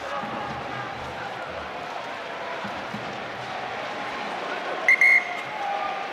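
Stadium crowd noise throughout, then near the end a referee's whistle blows once: a short, high blast with a break in it.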